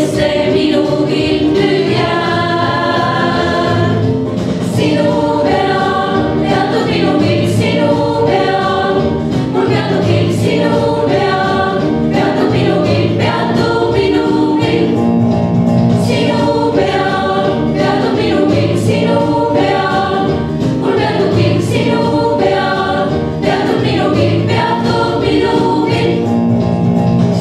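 A small women's vocal ensemble singing together, sustained sung lines with no break.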